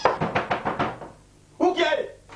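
Rapid knocking on a wooden door, about six quick knocks in under a second. A voice calls out near the end.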